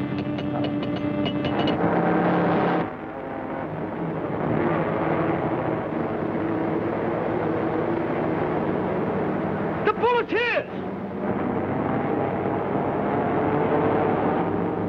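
Old animated-cartoon soundtrack: the steady running noise of a rocket-shaped car mixed with orchestral score, with a fast run of clicks in the first two seconds and a short wavering, whistling sound about ten seconds in.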